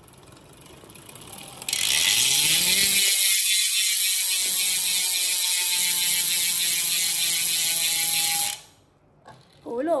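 Very loud aluminium rear freehub of a Sava X9.9 road bike buzzing as the rear wheel is spun by hand and coasts, its pawls ratcheting too fast to hear singly. The buzz starts abruptly about two seconds in, runs evenly, and stops abruptly shortly before the end.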